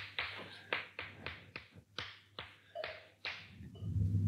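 Chalk on a blackboard: about a dozen short, quick strokes and taps as lines and a small diagram are drawn.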